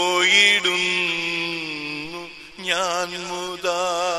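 Slow Malayalam Christian funeral song: a voice holds long drawn-out notes with a wavering vibrato between lines of the lyrics, breaking off briefly about two and a half seconds in before taking up the next note.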